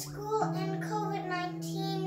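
A young girl singing over instrumental music with long held low notes; the held note steps up about half a second in.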